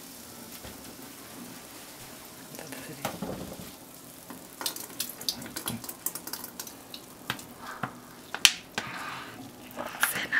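Handling clicks and knocks of a plastic cola bottle and a small ceramic bowl, becoming frequent in the second half, with one sharp click the loudest, about eight and a half seconds in. Near the end, fizzing as the partly frozen cola foams out of the upturned bottle into the bowl.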